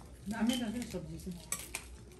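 Dishes and cutlery clinking at a dining table during a meal, ending in two sharp clinks in quick succession near the end.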